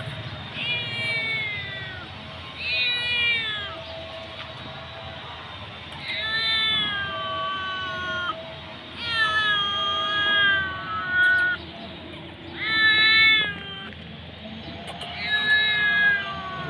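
Hungry kitten meowing over and over, about six calls a second or two apart, each falling in pitch, some of them drawn out to about two seconds.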